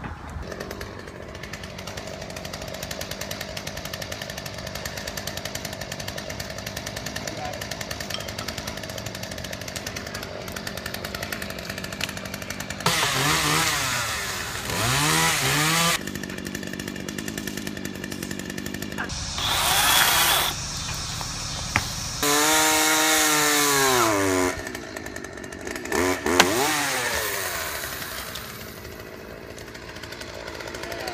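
Corded electric chainsaw cutting a tree limb: a steady hum for about twelve seconds, then four louder bursts of cutting, with the motor's pitch sweeping down and up in each.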